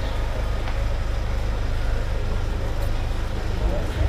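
Steady low rumble with people talking nearby on the street.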